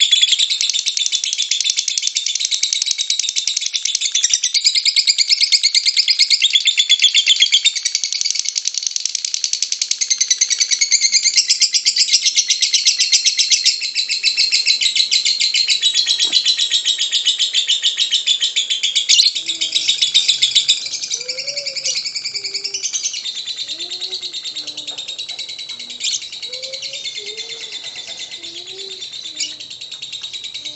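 Lovebird 'ngekek': a long, unbroken chattering trill of very rapid, high-pitched repeated notes. It is loud for the first two-thirds and somewhat weaker after that, with faint lower gliding calls underneath near the end.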